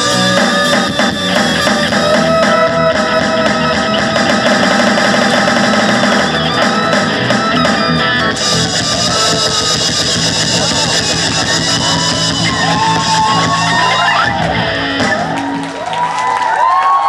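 Live rock band playing the closing bars of a song: strummed acoustic guitar, electric guitar, bass and drums with crash cymbals ringing. Near the end the bass drops out as the song winds down to its finish.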